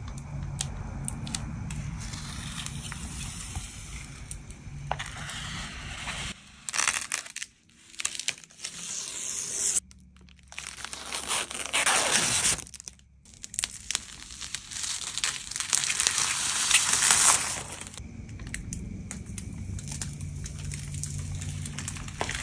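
Clear protective plastic film being peeled off a PC case's clear panel: a crackling, tearing peel in several stretches with short pauses, the loose film crinkling in the hand.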